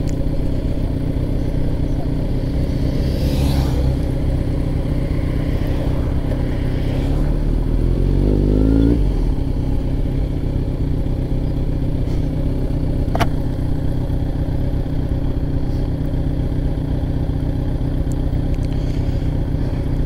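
Kawasaki Z900's inline-four with a Jeskap full exhaust running at low speed in slow traffic, with a brief rise in engine revs about eight seconds in. One sharp click comes about thirteen seconds in.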